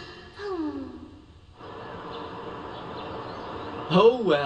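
A voiced sigh that falls in pitch, about half a second in, followed by a faint steady background.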